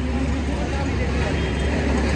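Street ambience: a steady low rumble of road traffic with faint voices in the background.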